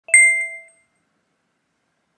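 A single short, bright bell-like ding, a chime of several clear ringing tones with a light second touch just after it, dying away in under a second: an edited-in sound effect.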